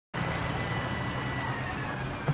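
Steady low engine hum with traffic noise from the street.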